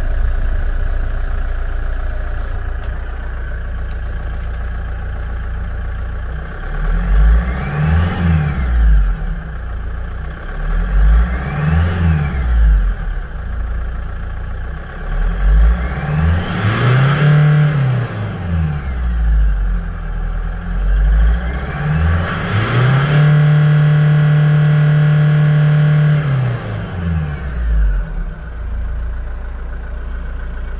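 Kia Bongo truck's engine, heard from inside the cab, idling and then revved four times: two short blips, a longer rev, and near the end a rev held steady for about three seconds before it drops back to idle.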